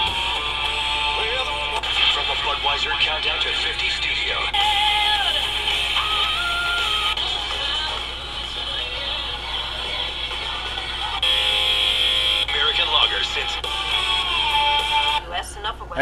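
C. Crane CC Pocket radio playing FM broadcasts through its small built-in speaker, switching stations several times, with talk and music in turn.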